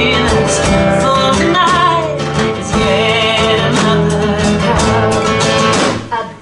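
Live band music: acoustic guitar strumming over a drum kit with cymbals, and a woman's voice singing a wavering line above them.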